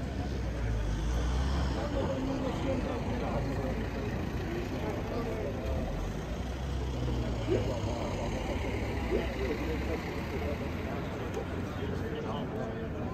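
Street traffic: a car passing with a low rumble, over a low murmur of voices.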